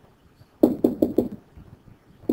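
Four quick, sharp taps of a stylus striking a tablet screen, as the strokes of a bullet mark are drawn, starting about half a second in.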